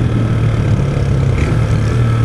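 Honda CG 160's single-cylinder four-stroke engine running steadily at about 50 km/h, with wind and road noise over the microphone.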